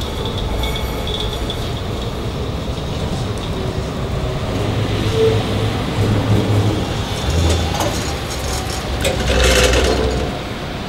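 A DÜWAG TW 6000 light-rail car pulls away from the stop and runs slowly through a curve, its motors and wheels rumbling louder as it draws near. It is loudest near the end as it passes close.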